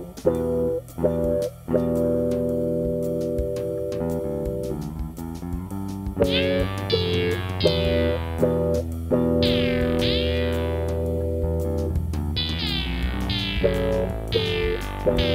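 Ambient electronic music on an analog synthesizer: short plucked-sounding bass and chord notes over a sustained low bed. From about six seconds in, each new note opens with a falling filter sweep.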